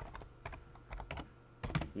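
Computer keyboard typing a short word: about seven separate key clicks, unevenly spaced.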